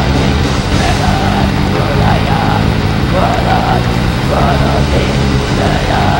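Heavy metal band playing live: electric guitars and drums, loud and dense throughout.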